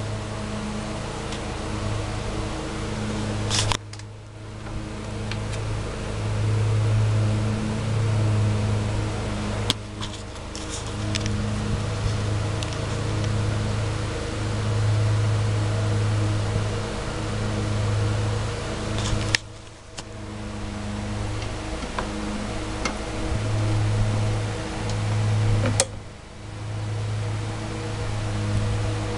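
A lawn mower engine running steadily, a low drone that swells and fades slowly as the mower moves about. The drone drops out briefly with a click a few times.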